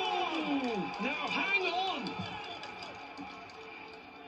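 A long, falling groan of dismay, then softer broken voice sounds over background television match audio. Everything gets steadily quieter toward the end.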